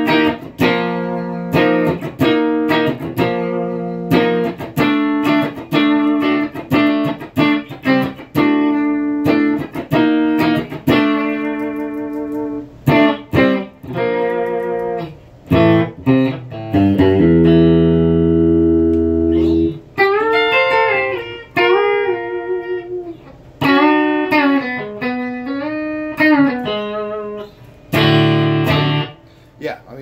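McLguitars Silverback S-style electric guitar played clean through its bridge pickup, volume rolled off a touch and tone turned down about a quarter. It opens with a rhythmic picked chord pattern, lets a full chord ring for a few seconds just past the middle, then plays single-note lines with string bends.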